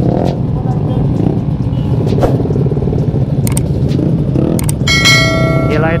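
Motorcycle and scooter engines idling together in a stopped pack, a steady low rumble. A few sharp clicks come in the second half, then a bright bell-like chime rings for about a second near the end.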